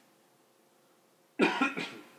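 Room tone near silence, then a man's short cough about a second and a half in, in two quick bursts.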